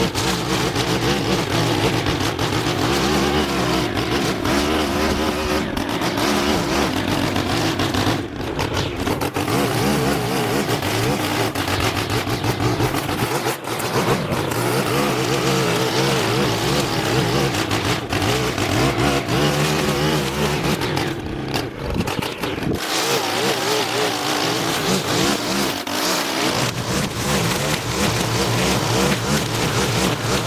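Gas-powered lawn equipment engine running steadily under load, its pitch wavering up and down as it works, with a few brief dips in level.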